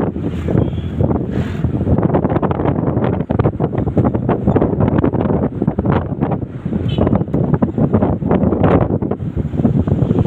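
Wind buffeting the microphone at an open window of a moving vehicle, loud and gusty, with the vehicle's travel noise underneath.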